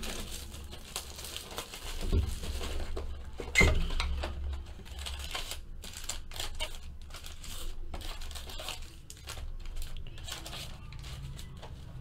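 A cardboard trading-card hobby box being opened and its wrapped card packs pulled out and handled: irregular rustling and scraping, with two soft knocks about two and three and a half seconds in.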